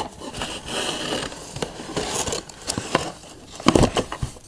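Handling noise as small objects are picked up and moved close to the microphone: irregular rustling and scraping with scattered clicks, and a louder burst of rustle just before the end.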